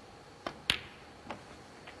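Snooker shot: a light tap of the cue tip on the cue ball about half a second in, then a sharp, louder click of the cue ball striking the object ball, and a softer knock of a ball against the cushion or pocket a little over half a second later.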